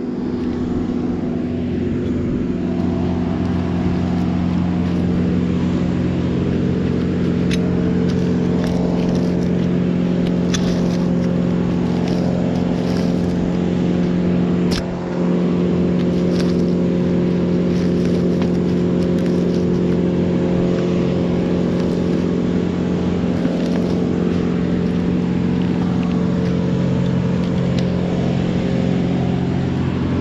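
An engine running steadily at an even speed throughout, with a brief dip about halfway, and a few sharp clicks over it.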